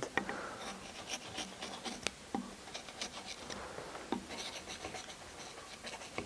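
A hand carving gouge making short, quick cuts into a wooden bear figure to add hair texture: quiet, irregular little scratches and ticks of the blade in the wood.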